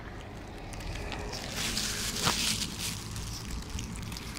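Outdoor vehicle noise: a steady low rumble, with a hiss that swells and fades in the middle as of a vehicle passing on the road, and a brief sharp sound about two seconds in.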